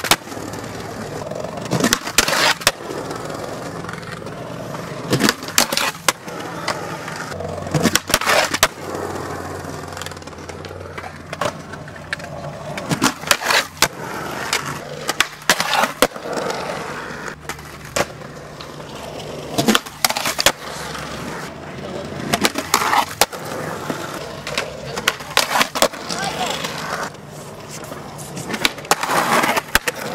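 Skateboard wheels rolling on concrete, broken by many sharp clacks of the board popping, landing and striking ledges.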